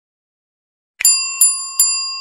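Small bell sound effect struck three times in quick succession, about 0.4 s apart, starting about a second in, each strike ringing on with a bright, high metallic tone: the ding that goes with clicking a notification bell.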